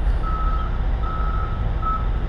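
A vehicle's reversing alarm beeping: a single steady high tone repeating evenly, about once every 0.8 seconds, over a low rumble.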